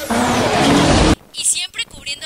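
Short, loud intro sound effect: a rushing noise over a low hum with a falling high whistle, cut off suddenly about a second in. A woman's voice follows.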